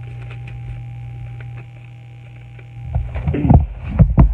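Steady electrical mains hum with a few faint clicks, then loud low bumps and rumbles about three seconds in: handling noise on a phone microphone while a Bible is picked up and its pages turned.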